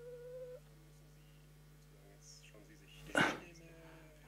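A pause in a man's speech at a desk microphone. A faint, high, drawn-out tone fades out about half a second in. About three seconds in comes one short, sharp intake of breath close to the microphone.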